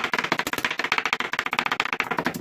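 Kitchen knife chopping onion on a wooden cutting board: a fast, steady run of blade strikes, many a second.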